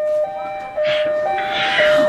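Electronic two-tone hi-lo siren sound, switching evenly between two pitches about every half second, from a noisemaker on the birthday cake. Two short hisses come in near the middle.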